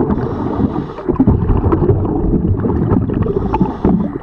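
Underwater noise around a diver's camera beneath a boat hull: a dense churning rumble with constant small crackles. Two brief hisses come in, about a quarter second in and again near the end.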